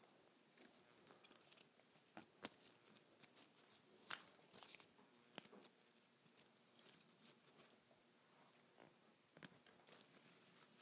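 Faint crackles and leaf rustles of ivy stems being handled and pushed into floral foam, with a few sharper clicks scattered through, over near silence.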